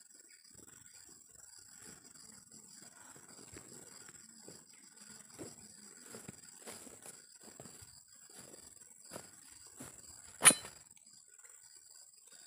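Footsteps and rustling in grass, faint short knocks scattered through, over a steady high-pitched background whine. A single sharp click about ten and a half seconds in is the loudest sound.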